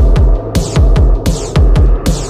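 Hardtek/acid tekno track: a heavy kick drum pounds repeatedly, each hit dropping in pitch, over a droning bassline with sharp percussion hits on top.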